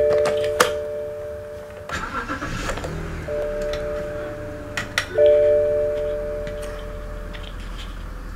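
Electronic dashboard chime tones sounding with the ignition on. About two seconds in, the 2005 BMW 525i's 2.5-litre inline-six cranks briefly and catches, then idles steadily under further chime tones.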